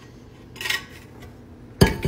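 An insulated tumbler set down on a counter: one sharp clunk near the end, after a brief soft rush about two-thirds of a second in.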